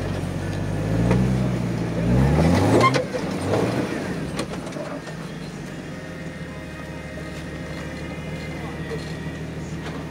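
Jeep engine revving up twice in the first three seconds as it climbs a steep rock ledge, then dropping back to a steady low idle.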